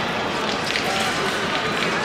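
Busy fencing-hall ambience: a steady murmur of distant voices in a large reverberant room, with a few faint clicks and taps of footwork from the strips.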